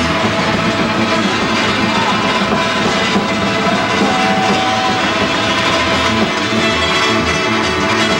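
A live band playing loud and steady, with guitars, bass and drums.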